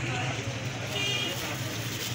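Busy street background: a steady low rumble of traffic with indistinct voices, and about a second in a faint ring of a steel ladle against a steel pot or bowl.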